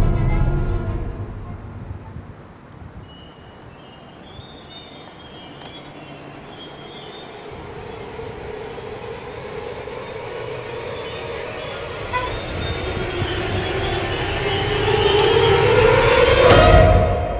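Horror-trailer sound design: a low boom fades out over the first couple of seconds. A sustained droning tone then swells steadily louder and rises in pitch toward the end.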